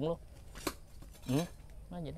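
A single sharp metallic clink about two-thirds of a second in, as a small round metal pot stand is set down against a heavy glazed pot.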